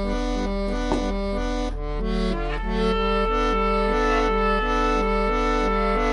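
Instrumental break played on a Bontempi Hit Organ, a toy electronic keyboard: a repeating two-note bass pattern under held reedy chords, with a long sustained note coming in about halfway through.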